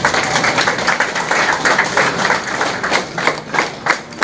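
A group of people applauding, a dense patter of hand claps that thins out to more separate claps near the end.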